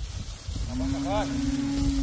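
A drawn-out, low human call held on one pitch for about a second and a half, starting about half a second in: a drover's call urging a string of tethered pack animals on. Wind rumbles on the microphone throughout.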